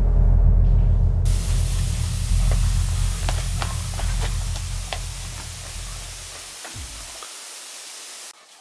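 A deep, low suspense-score drone that slowly fades out and drops away near the end. From about a second in, a steady hiss with scattered faint clicks runs beneath it.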